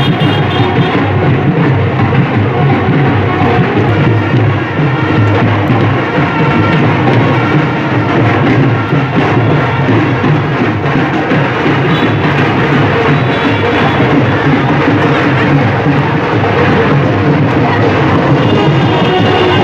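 Loud wedding-procession band music with drums, playing on without a break.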